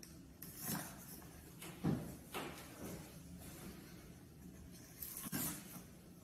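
Faint, short scraping and rustling sounds, a handful of separate strokes, as a knife blade works at the packing tape sealing a cardboard box.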